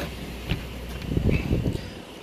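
Wind buffeting the microphone over a steady low rumble, gusting hardest from about one to two seconds in, with a single sharp click about half a second in.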